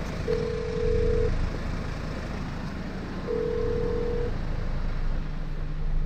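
Telephone ringback tone on a radio call-in broadcast: two steady one-second beeps, three seconds apart, as the show's call to a listener rings out. A low steady rumble runs underneath.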